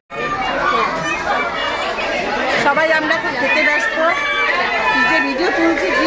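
Indistinct chatter of voices talking. The sound drops out for a split second at the very start, then resumes.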